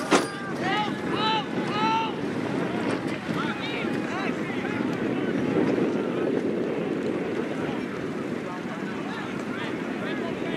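Wind noise on the microphone over an open soccer field, with distant shouts from players and spectators in about the first two seconds. A single sharp knock comes right at the start.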